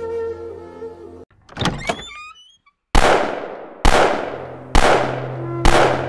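Soft music cuts off, a short swishing effect follows, and after a moment of silence four loud, booming thuds land about a second apart, each ringing out. A low droning tone comes in under the last two.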